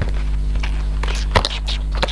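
Cardboard packaging being handled and opened: a few short clicks and rustles, bunched between about one and two seconds in, over a steady low hum.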